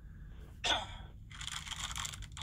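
A man's cough played back from a recorded clip through an iPhone's speaker: one short cough a little over half a second in, then breathy noise near the end.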